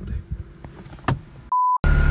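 A short, steady beep about a second and a half in, cut into dead silence, following a stretch of faint low rumble with a single click.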